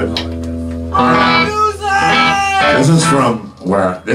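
Electric guitar holding a ringing chord through the amplifier, with a man's voice over it at the microphone from about a second in.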